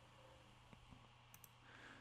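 Near silence with a steady low hum, broken about one and a half seconds in by a faint double click of a computer mouse button.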